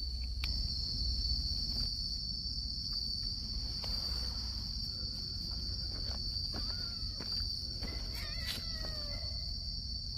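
Insects chirring in one steady high-pitched drone, over a low rumble, with a few faint clicks and a few faint short sliding calls a little past the middle.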